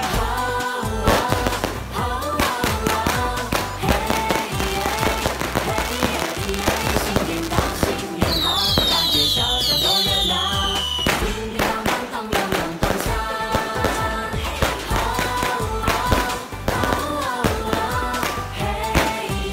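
Upbeat Chinese New Year song playing over fireworks and firecrackers popping and crackling throughout. A little past halfway, a short run of falling whistles sounds.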